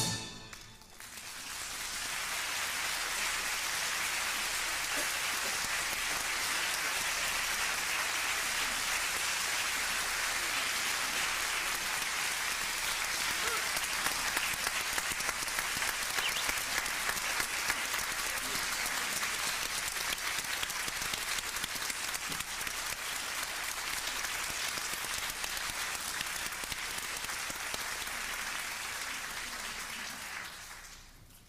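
Large audience applauding steadily, swelling up within the first two seconds after the music stops and fading away at the very end.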